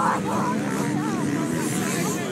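A pack of off-road racing motorcycles pulling away from a mass race start, many engines revving together, their pitches rising and falling over one another as they accelerate and shift.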